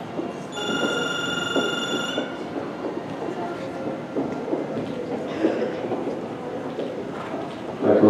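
A steady electronic tone sounds for about two seconds, starting about half a second in: the show-jumping start signal telling the rider the round may begin. Under it runs the steady noise of a busy indoor arena.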